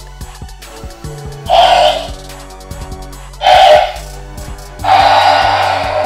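Scorpius Rex dinosaur toy's sound chip, triggered by a button, playing three short creature roars through the speaker in its belly, the third the longest. Background music with steady low tones runs underneath.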